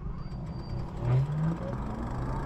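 Wind buffeting the microphone and tyre noise from an e-bike rolling along pavement, a steady low rumble. About a second in, a brief low pitched hum rises slightly.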